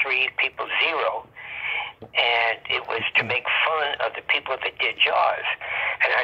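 Speech only: a voice talking steadily, sounding thin and cut off in the highs as over a phone or internet call line.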